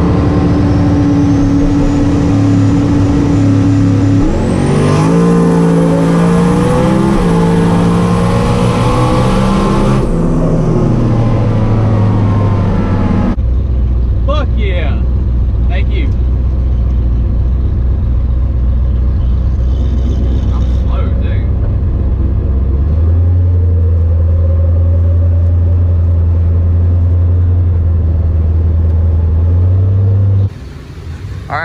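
Turbocharged 4.6-litre two-valve V8 of a New Edge Mustang GT, heard from inside the cabin, running at low speed after a drag pass. Its pitch shifts up and down over the first few seconds, with a thin whistle above it. About halfway through it settles into a low, steady idle.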